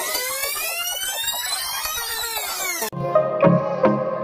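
An electronic sweeping sound effect, many tones rising and bending together, that cuts off suddenly about three seconds in; then background electronic music with a steady beat starts.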